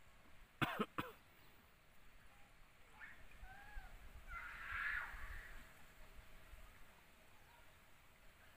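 Quiet outdoor ambience with a light low rumble. About half a second in come two short, harsh vocal sounds in quick succession. A few faint bird chirps follow around the middle.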